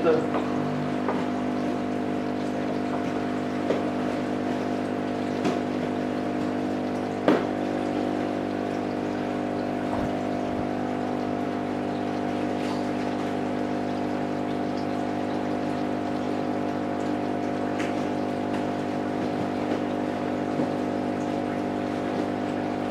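Steady hum of an aquarium air pump, with water bubbling from the air stone in the tank. A few faint clicks come through, the sharpest about seven seconds in.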